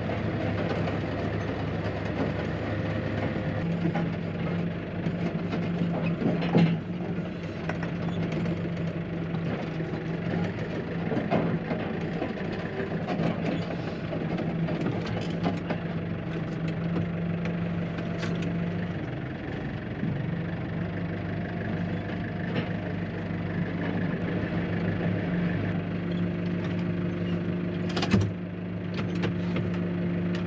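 Tractor engine running, heard from inside the cab, its note shifting a few times as it is driven. Occasional clunks, with one sharp knock near the end as the loudest sound.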